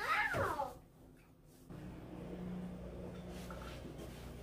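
A toddler's short, high-pitched squeal that slides down in pitch, lasting under a second. Then, a little under two seconds in, a steady low hum starts.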